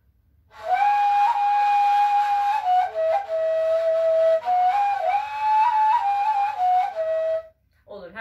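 Ney, the Turkish end-blown reed flute, playing a short melodic line of held notes with small ornamental turns between them, in a breathy, airy tone. It starts about half a second in and stops about half a second before the end.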